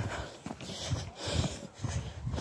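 Footsteps at walking pace, about two a second, with rustling.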